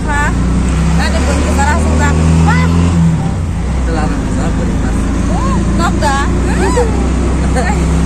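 Engine of a passenger vehicle running steadily as it drives, a continuous low drone heard from inside the cabin, with people's voices talking over it.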